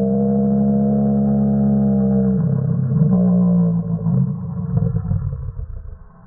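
A man's loud, sustained yell with a steady pitch, held for about two and a half seconds, then breaking into shorter, wavering vocal sounds that fade out about five seconds in.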